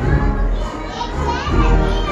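A processional brass-and-drum band (agrupación musical) playing, with sustained brass notes and a heavy bass drum beat. Children's voices and crowd chatter carry over the music.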